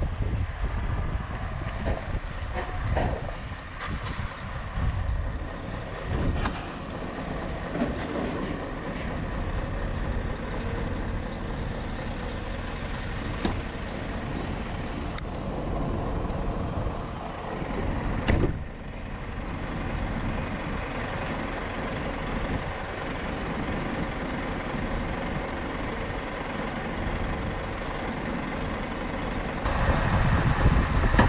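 Scania S650 V8 truck engine running as the truck moves at low speed, heard from outside the cab, with two brief sharper sounds about six and eighteen seconds in.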